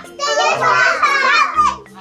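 A class of two-year-old children calling out together, their high voices overlapping, answering the teacher's question about a picture card.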